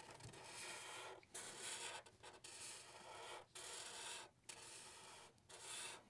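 Faint scratching of a black Sharpie marker's felt tip drawing on paper, in about six strokes of roughly a second each with brief lifts in between.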